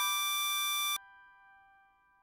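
Harmonica holding a single draw note on hole 8 (D6) over a soft backing chord. The harmonica cuts off about a second in, leaving the chord's tones fading away.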